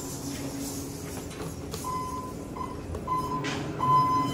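Elevator car beeping with a single high electronic tone in short, broken pieces that start about two seconds in and turn into a longer steady beep, over a low steady hum.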